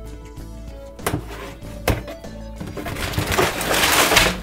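A cardboard LEGO box being opened over background music. Two sharp snaps come as the seals are torn, then a growing rustle of cardboard and bagged parts as the end flap is swung open.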